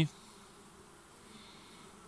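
Faint, steady hum of honeybees crowding an open brood frame lifted out of a small hive.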